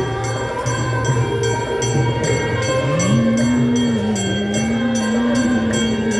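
Devotional aarti singing with held, gliding sung notes over steady, rhythmic strikes of metal percussion.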